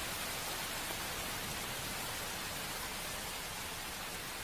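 Steady rain falling: an even hiss with no distinct drops standing out.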